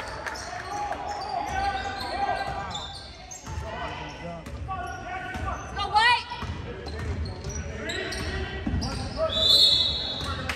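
Basketball being dribbled on a hardwood gym floor during play, with sneakers squeaking and spectators' voices echoing in the large gym.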